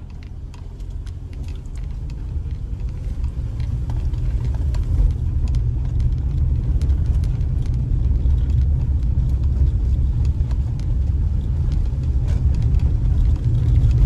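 A car driving on a dirt road, heard from inside the cabin: a steady low rumble of engine and tyres that grows louder over the first few seconds as it picks up speed. Scattered small ticks and rattles run through it.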